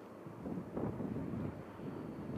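Wind buffeting the microphone: an uneven low rumble that swells about half a second in and eases after a second and a half.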